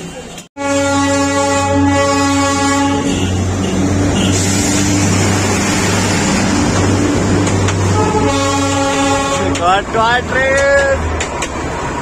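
Darjeeling Himalayan Railway steam locomotive whistle sounding two long blasts, the first starting about half a second in and the second about eight seconds in, the second wavering in pitch as it shuts off about eleven seconds in. Under both runs a steady low rumble of the train's carriages rolling past close by.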